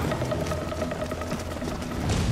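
Battle-scene film soundtrack: a steady held tone over a low rumble, with scattered small clicks from the fighting.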